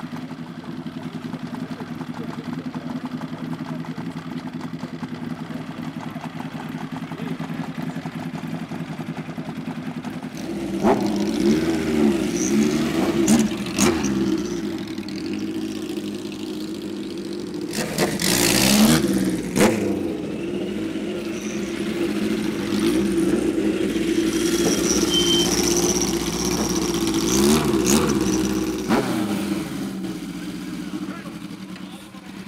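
Motorcycle engines. A Yamaha RZ two-stroke twin idles steadily for about the first ten seconds. After that, motorcycle engines rev up and down as they pull away, with a loud burst of revving a little past the middle.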